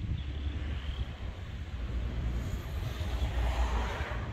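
Pickup truck towing a loaded flatbed trailer driving away down a road, heard as a low, steady rumble of engine and tyres.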